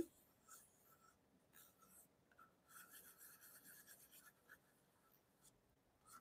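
Near silence, with faint rubbing sounds for about two seconds midway through.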